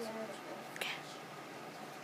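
Quiet, low voices in a small room, murmured speech in the first half second, then a single sharp click a little under a second in, over steady room noise.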